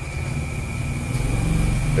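A steady low mechanical hum, like an engine or machine running, growing slightly louder toward the end, with a faint steady high whine above it.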